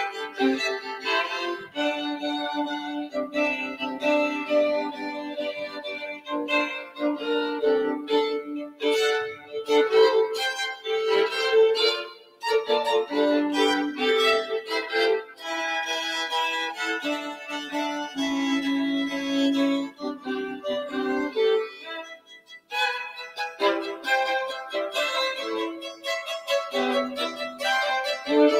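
Two violins playing a duet live, two lines of bowed notes sounding together, sometimes held and sometimes moving quickly. The playing breaks off briefly about twelve and twenty-two seconds in.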